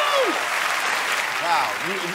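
Applause, many hands clapping steadily, with a man's voice calling "Wow!" near the end.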